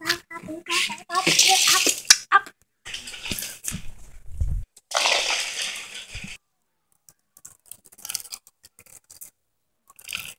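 A red plastic toy car pushed and rolled across a tiled floor, heard as several noisy rushing bursts with a low thump about four and a half seconds in, then faint light clicks.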